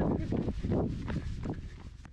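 Running footsteps on a paved road, several a second, over a low rumble on the microphone, fading near the end.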